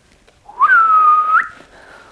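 A single whistled note, about a second long: it slides up, holds steady, then flicks up sharply at the end and stops.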